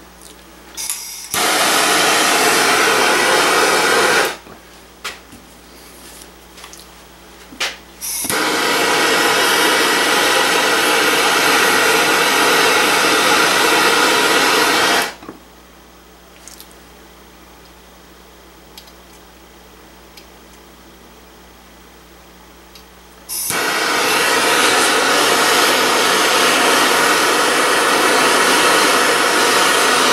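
Hand-held gas torch flame hissing in three spells, heating a gun barrel and tenon so the soft solder flows into the joint, with quieter pauses between while wire solder is fed in.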